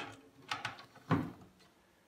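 A few soft handling knocks and clicks, the loudest about a second in, as the tuner phone and a drumstick are handled.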